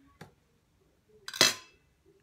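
A faint click, then about a second and a half in a single sharp clatter of a kitchen knife set down on a plate.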